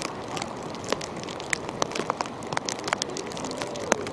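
Rain falling: a steady hiss broken by many irregular sharp ticks of drops striking close by.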